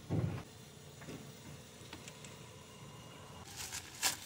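A brief low thud at the start, a few faint clicks of handling, then a plastic parts bag crinkling near the end.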